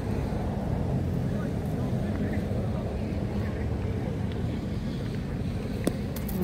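Steady wind rumble on the microphone. Just before the end comes one sharp knock: a thrown pétanque boule (steel ball) landing on the gravel pitch.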